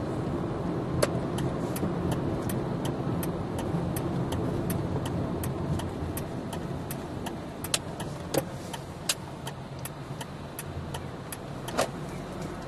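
Engine and road rumble heard inside a car cabin, with an evenly spaced ticking of about three ticks a second, like a car's turn-signal indicator, starting about a second in. A few ticks stand out louder.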